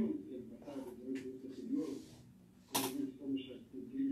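A person talking over a telephone line, the voice thin and muffled. Several clicks cut in, the loudest a sharp click near the end.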